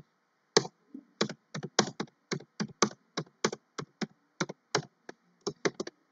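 Computer keyboard typing: a run of irregular, quick keystrokes, about three to four a second, with brief pauses between bursts.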